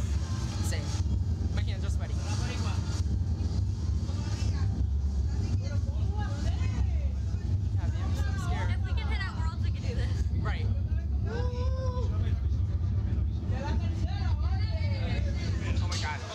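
Steady low mechanical rumble from a slingshot thrill ride's machinery, with faint voices talking over it.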